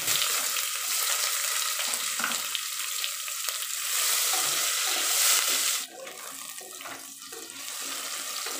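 Sliced onions sizzling loudly in hot oil with cumin seeds as they are tipped into the pot and stirred with a spatula. The sizzle drops noticeably about six seconds in and carries on more quietly.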